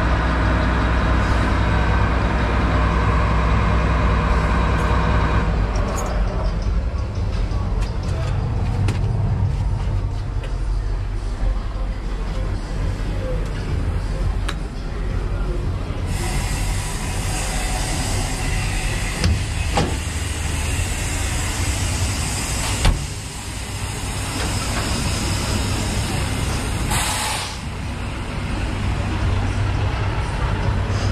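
Engine of a small tracked machine running at raised speed, then dropping to a steady idle about five seconds in. Later a steady hiss runs for several seconds and ends with a single sharp knock. A short burst of hiss comes near the end.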